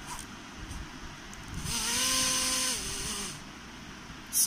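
Small toy drone DC motor with a plastic propeller, run straight off a 9-volt battery, spinning up with a high whine and a rush of air about one and a half seconds in. The whine drops in pitch shortly before it stops, a little under two seconds later.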